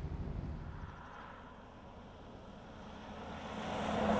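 A car and then a single-decker bus come along a wet road and pass close by. The engine and tyre noise swells steadily and is loudest as the bus goes past near the end.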